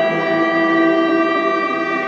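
Rainger FX Drone Rainger pedal's drone tones: a steady wash of several sustained notes layered together, held without change.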